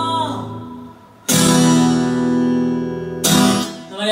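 A sung note trails off, then an acoustic guitar strums two chords about two seconds apart, each left to ring out.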